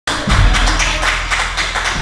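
A small audience clapping, a quick run of irregular hand claps.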